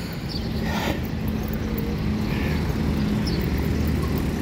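Street traffic: a vehicle engine running with a steady low hum that grows gradually louder, over a general road noise.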